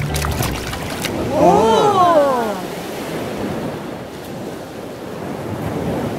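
Sea surf washing in over sand, a steady rush of water. About a second and a half in, a short pitched call rises and falls over it.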